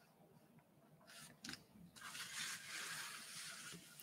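Faint rustling scrape of an illustration board being slid and turned on a desktop: a short scrape about a second in, then a longer one of nearly two seconds.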